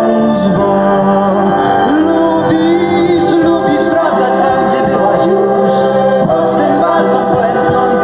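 Three singers, a man and two women, singing a held, sustained melody together through microphones, backed by a live band with drums and keyboard.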